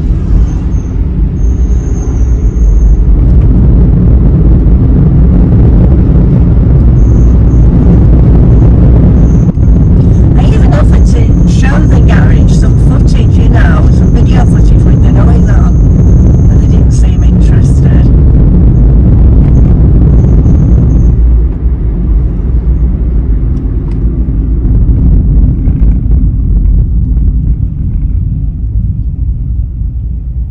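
Road and engine rumble inside a moving car's cabin, steady and loud. Several brief sharper sounds come in the middle. The rumble eases about two-thirds of the way through as the car slows.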